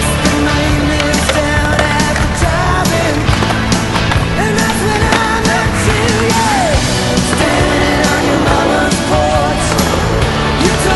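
Skateboard wheels rolling on asphalt, with sharp clacks of boards popping and landing, over rock music.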